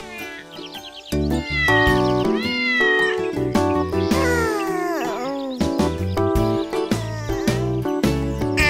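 A cartoon cat meowing several times over children's song music, which comes in with a steady beat about a second in.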